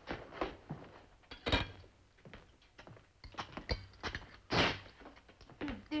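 Footsteps on a wooden floor as a man walks across the room, an irregular run of short knocks and thuds with two louder ones about a second and a half in and near the end.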